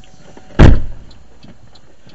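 A single loud, heavy thump in the car cabin about half a second in, dying away quickly.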